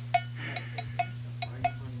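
A run of light, sharp clinking taps, about seven in two seconds at uneven spacing, each ringing briefly at the same pitch like a hard glass or metal object being tapped, over a steady low electrical hum.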